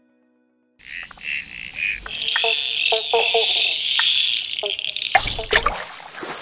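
Frogs calling in a chorus, a high steady trill with lower croaks, starting about a second in. Near the end a brief splash of water cuts across it and then trails off.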